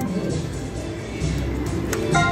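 Casino slot-floor ambience: electronic slot machine music and tones over a steady background din, with a sharp click near the end.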